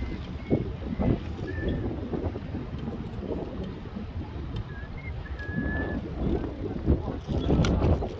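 Wind buffeting the microphone of a camera carried on a moving bicycle, an uneven low rumble, with a few faint short high whistles in the first half.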